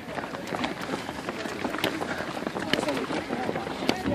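Running shoes slapping on a concrete road as many runners pass, a patter of irregular light footfalls, with faint voices in the background.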